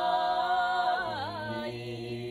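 Corsican paghjella: three unaccompanied voices singing a sustained chord in close harmony. About a second in, a high voice ornaments with a quick wavering turn and then fades out, while a low bass note holds beneath.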